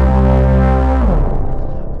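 Low synthesizer note from the SkyDust 3D software synth, held steady, then released about a second in. On release the pitch envelope drags the pitch down in a falling glide as it fades, like a machine or engine shutting down.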